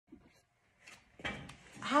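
Faint movement noises and a soft knock about a second in as a person sits down on a folding chair, then a woman starts to say "Hi" at the very end.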